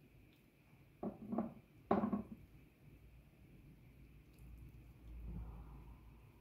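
Silicone spatula spreading a wet, pasty marinade over fish in a glass bowl: three short scrapes close together, about one to two seconds in, then a low rumble of handling near the end.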